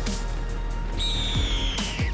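Intro music with deep bass hits that drop in pitch. About halfway through, a long, high screech that slowly falls in pitch comes in over it, a bird-of-prey cry sound effect.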